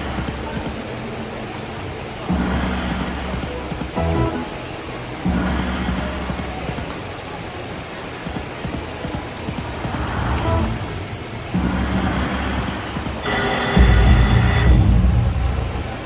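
Dancing Drums slot machine playing its free-games bonus music, with a new swell of music and reel sounds for each spin about every three seconds. Near the end comes a louder, brighter burst with high ringing tones as the bonus retriggers and adds extra free spins.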